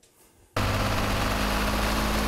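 Tractor running with a mounted fertilizer spreader: a steady engine hum over a wide, even noise. It cuts in suddenly about half a second in.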